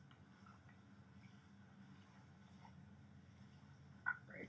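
Near silence: faint, steady low background hum of the outdoor ambience.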